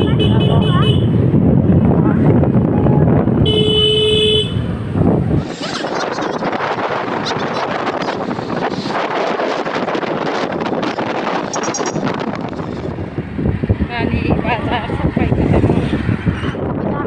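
Wind buffeting the microphone on a moving motor scooter in street traffic, with one vehicle horn honk lasting about a second, about four seconds in. After about five and a half seconds the wind rumble drops away, leaving busy traffic and street noise.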